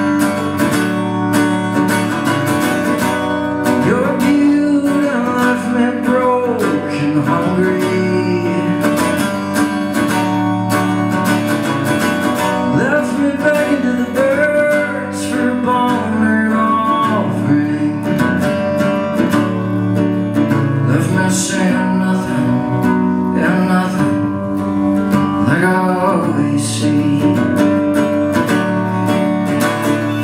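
Acoustic guitar played solo, with a man's voice singing over it in a live folk performance.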